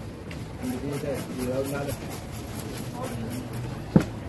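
Voices talking over a steady low hum, then one heavy chop of a large knife into a wooden chopping block near the end.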